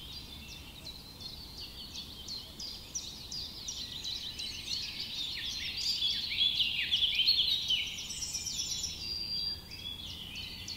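Many small birds chirping at once: a dense chorus of quick high chirps and short downward-sweeping notes. It grows busier and louder about six to seven seconds in, then thins a little.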